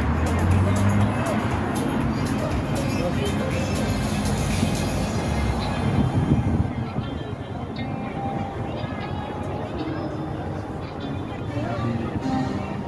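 Busy street ambience: background music and crowd voices over passing traffic.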